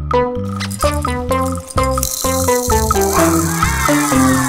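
Small plastic beads (toy cereal) pouring from a cardboard box into a plastic bowl, a rattle starting about halfway through, over cheerful children's background music.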